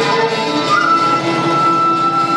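Traditional Vietnamese instrumental ensemble music, with a long high note held steadily from under a second in.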